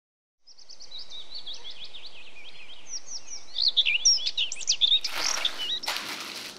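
Birds chirping and twittering in a quick, busy run of short calls over a steady background hiss, starting after a brief silence. In the last second a louder rustling noise comes in.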